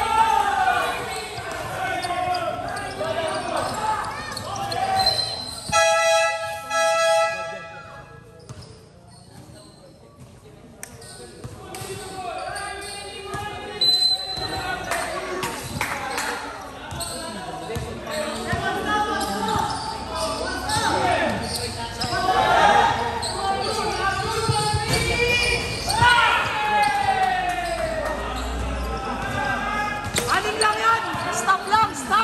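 A basketball being dribbled and bouncing on a hard court during a game, with players and spectators calling out. A long held tone sounds about six seconds in, and the game noise dips briefly a few seconds later.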